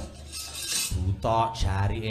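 Wayang kulit kepyak, the metal plates hung on the puppet chest, clattering as a puppet is moved.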